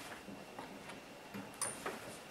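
A quiet pause filled with a few faint, irregular clicks and light rustles from sheets of paper being handled and turned over.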